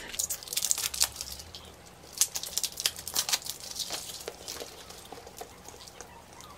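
Crinkling and rustling of packaging being handled, a run of irregular crackles that thins out after about four seconds.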